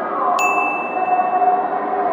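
A bright bell-like ding strikes about half a second in and rings on as one steady high tone, over a held chord of several sustained tones.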